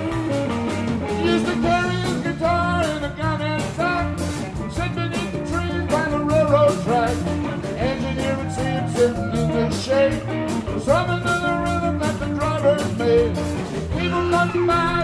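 Live rock and roll band playing an instrumental break. An electric guitar plays lead lines with bent notes over electric bass and a drum kit keeping a steady beat.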